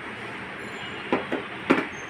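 Stainless steel blender jars knocking against a counter as they are set down: a few short knocks in the second half, the last the loudest, over a steady room hiss.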